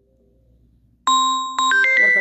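Background music of chiming, bell-like synthesizer notes that comes in suddenly about a second in, after a near-silent pause, and moves through a few notes.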